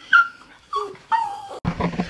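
Small dog whining in three short, high yips, each dropping in pitch. Near the end the sound cuts suddenly to a low rumble.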